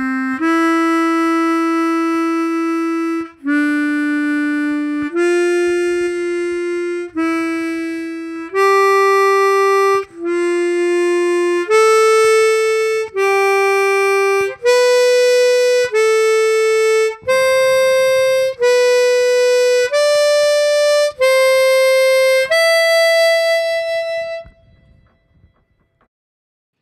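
Chromatic harmonica playing a slow ascending C major scale in thirds (C–E, D–F, E–G and on up), one held note at a time, about a note a second. It climbs over two bars and ends on a longer held top note that fades out.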